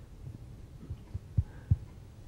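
A few soft, low thumps in a quiet room, the two loudest close together about a second and a half in.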